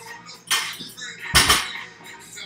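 A 185 lb barbell loaded with bumper plates dropped from the shoulders onto a rubber gym floor: a metal clank about half a second in, then a heavy landing about halfway through with a quick second bounce.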